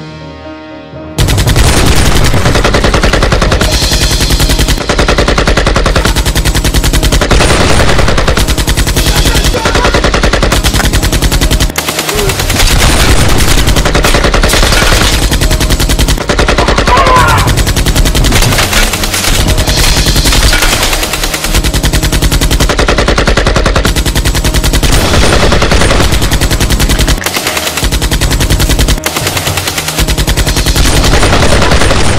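Sustained automatic rifle fire, rapid shots running almost without a break. It starts abruptly about a second in and pauses only briefly twice.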